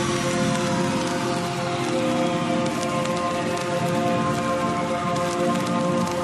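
Outro of a dubstep track with the bass and drums dropped out. Held synth chords sit over a dense, even hiss, with a slow downward sweep and scattered small clicks.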